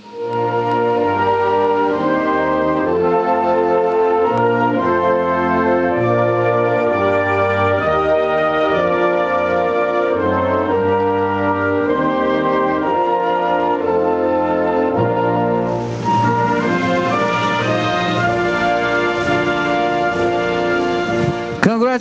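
A recorded national anthem played by brass and organ-like orchestral sounds, in slow, held chords. The sound changes character about sixteen seconds in.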